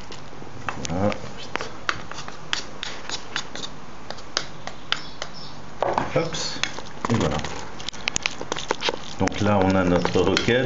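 Utensil clicking and scraping against a glazed ceramic bowl as bow-tie pasta is tossed with pesto, giving irregular sharp clicks throughout. A voice murmurs briefly about a second in and again around six to seven seconds.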